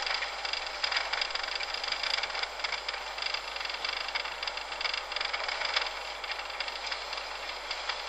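Steady rushing noise of a car travelling along a road, heard from inside.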